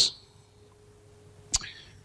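A pause in a man's talk: faint room tone with a thin steady hum, broken by one sharp click about one and a half seconds in.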